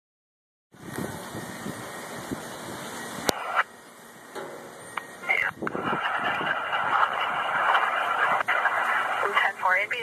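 Emergency-services radio scanner: a hiss of static, a sharp click about three seconds in, then indistinct dispatch voice transmissions that grow louder toward the end.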